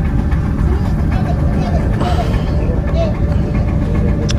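Steady, loud low engine rumble of a ferry as it comes alongside the dock, with faint voices in the background.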